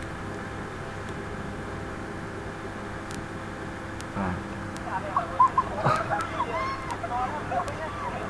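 Steady low hum for the first four seconds, then, from about five seconds in, voices with a few sharp clicks.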